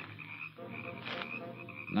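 Sound-effect chorus of frogs croaking at night, a steady run of short repeated calls over the faint hum of an old radio transcription.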